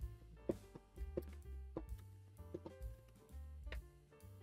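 Faint background music with steady held notes and a bass line, with a few sharp clicks and taps scattered through it.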